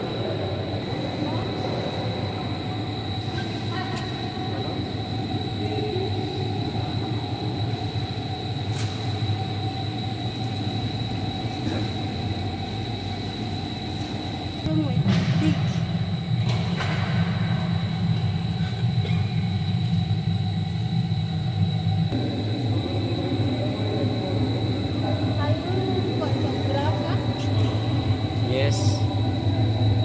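A drum coffee roaster running with a steady mechanical rumble and hum and a thin, constant high whine. It grows louder about halfway through.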